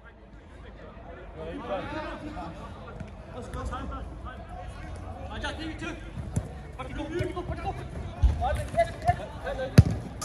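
A football being kicked on an artificial-turf five-a-side pitch: a few dull thuds, the sharpest just before the end as a shot is struck at goal. Players shout throughout.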